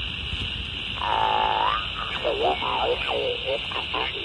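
Single-sideband voice from a 20 m amateur station coming through a Quansheng UV-K5 handheld's speaker over a steady hiss. The voice starts about a second in.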